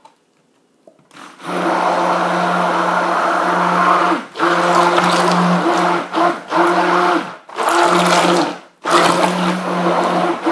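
Handheld stick blender running in a bowl of soap oils, mixing in cocoa powder and brown sugar. It switches on about a second in and runs in long bursts with a few brief stops.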